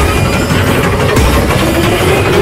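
Loud, low, rumbling drone of a dark horror-trailer soundtrack, with irregular deep thuds.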